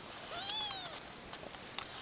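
A young kitten gives a single short, high meow that rises and then falls in pitch, about half a second long.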